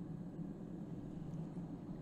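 Faint steady low background hum of shop room tone, with no distinct strikes or scrapes.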